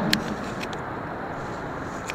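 A pause in the speech filled by a steady background noise with no clear pitch, plus a few faint short clicks.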